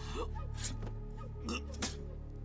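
A man breathing hard in short, ragged gasps, four or five times, over background music with a low steady drone.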